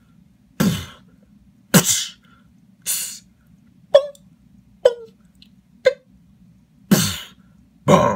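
Mouth drums (beatboxing) by a man: about seven separate percussive mouth sounds, roughly one a second, breathy hiss-like strokes mixed with shorter, tighter pops.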